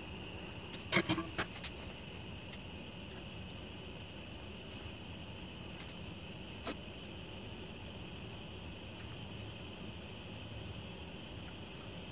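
Gas stove burner just lit under a glass vacuum coffee maker, giving a faint steady hiss. A few clicks come about a second in and a single tick a little past halfway.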